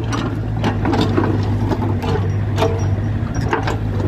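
Mitsubishi MM35 mini excavator's diesel engine running steadily, with irregular metallic clanks and knocks from the boom and bucket as they move.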